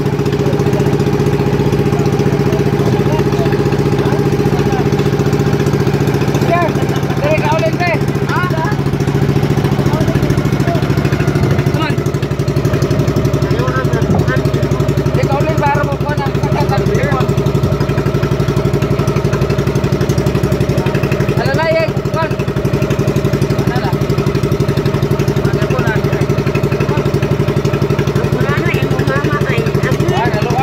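Small engine of a motorized outrigger boat running steadily at an even speed, with brief faint voices over it now and then.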